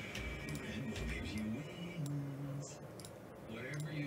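Low background music with a few light clicks of a computer mouse.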